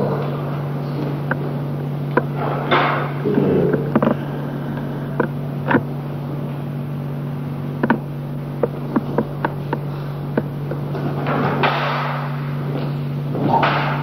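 A steady low hum under scattered sharp clicks and knocks at irregular intervals, a cluster of them about two-thirds of the way in, and a few longer rustling noises.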